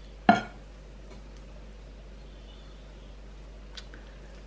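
A metal spoon clinks once against a dish about a third of a second in, a short ringing knock, followed by a faint tick near the end over a steady low hum.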